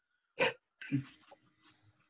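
Two short breathy vocal noises coming over a video-call line, a sharp one about half a second in and a rougher one just after, like a participant's sniff or grunt as their microphone opens.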